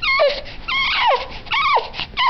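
A two-month-old baby crying in short wails, about three in two seconds, each one falling in pitch.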